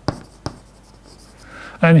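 Chalk tapping and scratching on a blackboard as words are written, with a few sharp taps in the first half second.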